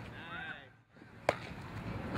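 One sharp smack of a softball impact about a second and a quarter in, during infield fielding practice. Faint short voice-like chirps come just before it.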